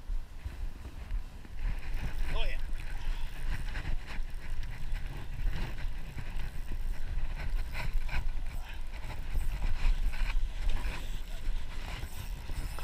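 Wind rumbling on an action camera's microphone over open water, with scattered light clicks and knocks.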